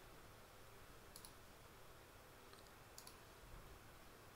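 Near silence with a few faint computer-mouse clicks, one about a second in and a pair around three seconds in.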